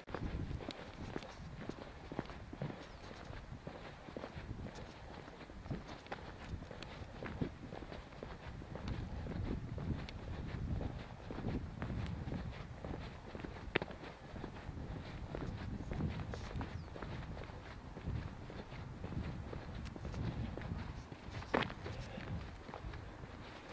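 Footsteps of a person walking along a country lane, first paved and then a dirt track, at an even pace, with a low rumble on the microphone that swells and fades.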